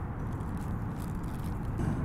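Steady low rumbling background noise with no clear tones or distinct events, swelling slightly near the end.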